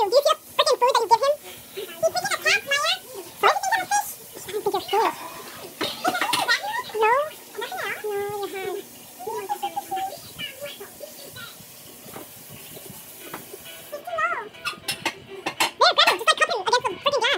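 People's voices in short, broken bursts of unclear speech, quieter from about eight seconds in until near the end.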